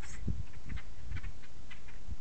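Quiet outdoor background: a steady low rumble with faint, scattered short ticks and clicks.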